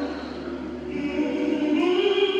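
A man singing a slow gospel hymn into a microphone, drawing out long held notes, then sliding up to a higher note near the end.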